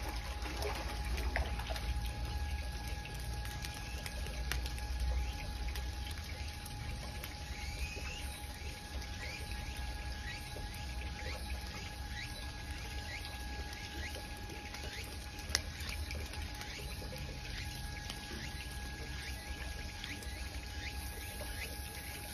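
Steady trickling of water with a low rumble, and faint short rising chirps repeating about once a second through the middle. A single sharp click comes near the end.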